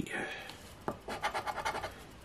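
A large coin scraping the scratch-off coating from an instant lottery ticket on a wooden table: a sharp tap about a second in, then a quick run of short scraping strokes.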